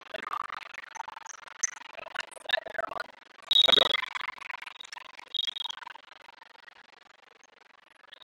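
Gym ambience of players and spectators calling out between rallies of a volleyball match, with a short, loud referee's whistle blast about three and a half seconds in and a shorter high blast about two seconds later.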